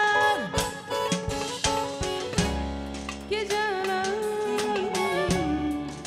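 A woman singing with a live band that includes a drum kit. Her ornamented phrase ends just after the start, and the band plays on alone with drum hits. About three seconds in she comes back on a long held note that breaks into melismatic turns.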